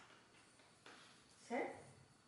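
A woman's voice saying one short word about one and a half seconds in, against quiet room sound.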